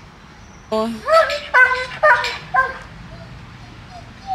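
A Doberman barking about five times in quick succession, starting just under a second in.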